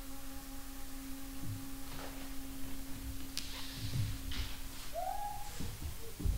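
A small wooden flute holds one long, steady low note for about four seconds. After a short break it plays a brief higher note that slides upward. A few soft low thuds sound underneath.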